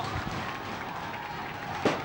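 Steady, even outdoor ambience on a football pitch recorded by a camcorder microphone, with a single sharp click near the end at a cut in the footage.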